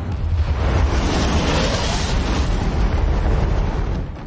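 Loud, sustained rumbling roar of a science-fiction soundtrack effect: a spaceship's drive burning at full thrust. It swells over the first second, then holds steady.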